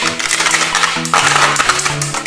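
Beyblade spinning tops whirring and clattering against each other and the plastic stadium, a dense metallic rattle, over background music with a stepped bass line.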